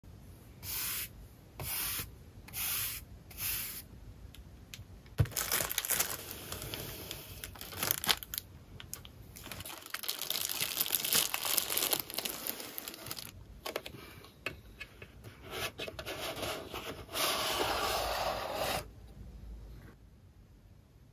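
Clear plastic wrapping on a Kaweco pencil box being torn and crinkled as it is peeled off, with a sharp click about five seconds in. Before that come four short rustles about a second apart.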